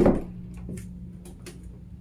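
A single dull thump as a walk-in closet door is handled at its knob and pushed open, followed by a few faint clicks, over a low steady hum.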